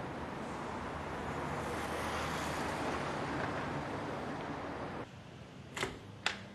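Steady rushing background noise that cuts off suddenly about five seconds in, followed by a sharp click just before the end.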